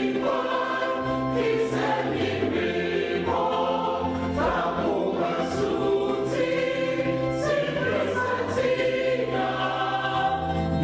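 Mixed church choir of men's and women's voices singing a hymn in parts, holding long chords that change every second or so.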